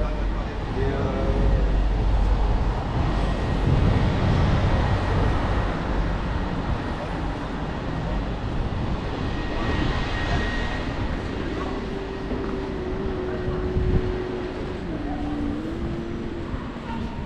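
Busy city street ambience: steady traffic noise, with a heavier vehicle rumble in the first few seconds, and snatches of passers-by talking.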